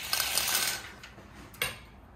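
Horizontal window blinds being raised by their lift cord: a dense ratcheting rattle of cord and stacking slats for about a second, then a single sharp click.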